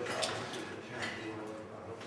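Indistinct background voices murmuring, with two sharp clicks, about a quarter second and a second in.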